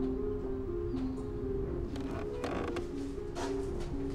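Background music: a slow, repeating figure of low held notes. About two and a half seconds in, a short creak sounds over it, fitting a wooden door being opened.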